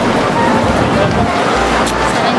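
City street traffic noise: a steady, dense roar of passing vehicles, with faint voices mixed in.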